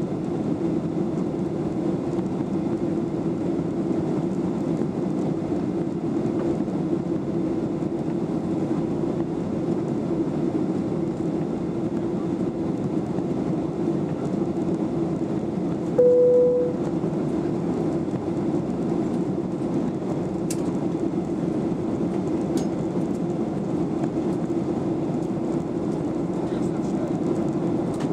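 Steady cabin noise of a Boeing 737-800 in flight, heard inside the cabin: an even rush of engine and airflow. About halfway through, a short single tone sounds, louder than the cabin noise.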